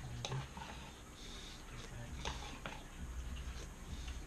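Someone eating cereal and milk: faint, scattered clicks of a spoon against the bowl, with quiet chewing, after a brief "mm".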